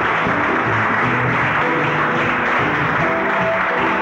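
Live band music: a dense, steady wash of sound over held low notes.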